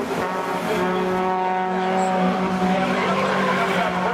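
Rallycross cars, a BMW 3 Series and a hatchback, racing side by side with their engines held at high revs in a steady, loud note.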